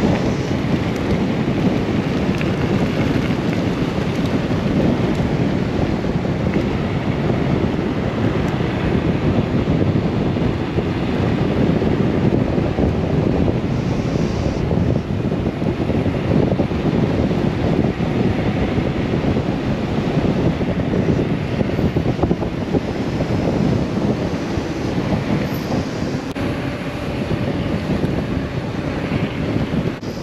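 Heavy, steady wind buffeting on an action camera's microphone as an e-mountain bike descends at around 73 km/h.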